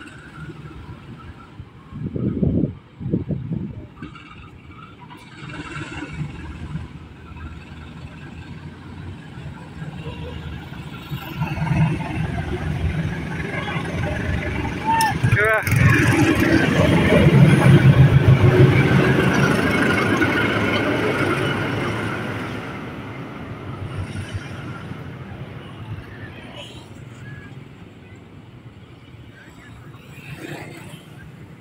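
KAI CC 201 diesel-electric locomotive hauling a track-geometry measuring car, its engine working as the train pulls out and passes close by. It builds up, is loudest as the locomotive goes past mid-way, then fades as it moves off. A couple of brief thumps come about two seconds in.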